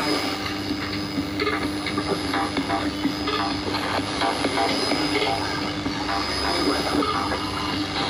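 Shortwave radio reception of the 13775 kHz (22 m band) Urdu-service broadcast through a Panasonic radio-cassette's loudspeaker: a steady hiss of static with a steady low hum and a thin high whistle, with the programme faintly audible underneath.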